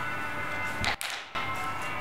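Background music with slow, steady held tones, broken about a second in by a brief sharp swish-and-click and a short dropout before the music carries on.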